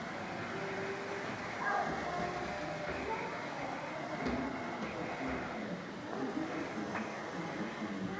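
Background chatter of people in an indoor exhibition hall: an indistinct murmur of voices over a steady din.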